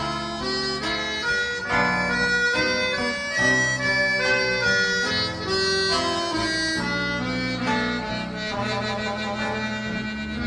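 Instrumental introduction of a milonga: a free-reed instrument plays a sustained melody over long held bass notes.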